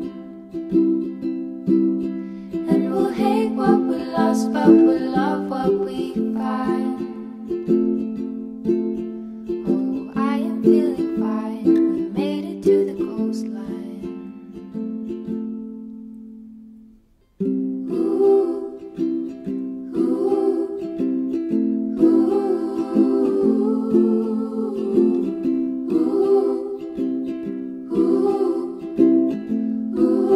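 Ukulele playing an instrumental passage of the song, picked and strummed chords. About halfway through the playing fades away to a brief moment of silence, then starts again at full level.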